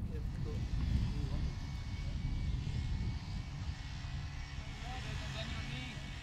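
Outdoor ambience: a dense low rumble like wind on the microphone, under a steady distant engine-like drone, with faint voices.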